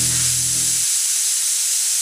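Steam jetting from a brass serpent-head outlet on a vintage steam car: a steady, loud hiss. Background music fades out about a second in.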